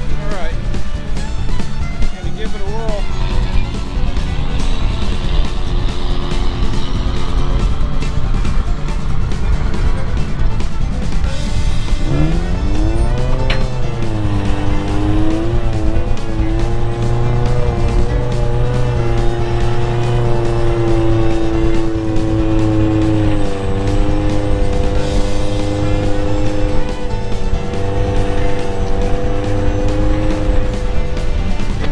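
A vehicle engine with music over it. About 12 seconds in the engine revs up sharply and then holds high revs, wavering at first, as the tow vehicle pulls a stuck pickup and travel trailer out of soft sand on a recovery rope.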